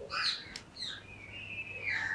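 Bird calls: a few short high chirps, then a longer whistled note that falls slightly near the end.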